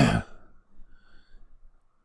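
A man coughs once, briefly.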